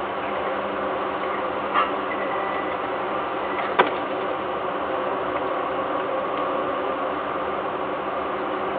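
Steady hum and hiss with several fixed tones, with a brief sound about two seconds in and a single sharp knock about four seconds in, as a falcon moves from the perch onto the nest-box ledge.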